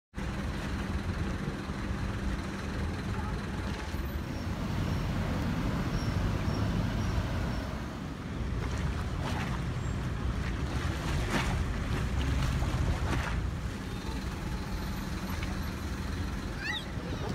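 Steady low outdoor rumble of wind on the microphone and distant engine noise, with a few brief sharp knocks in the second half.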